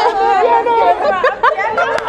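Several people talking over one another and laughing.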